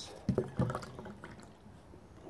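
Beer poured from a can into a glass, the stream fading toward the end. A short low voice sound comes about half a second in.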